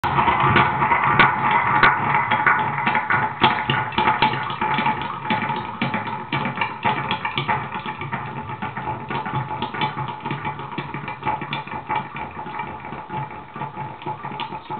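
Homemade spring-rod instrument, its rod pulled aside and let go, heard through a pickup wired to an effects pedal: a dense, clattering rattle of rapid clicks that fades gradually as the rod's swaying dies down.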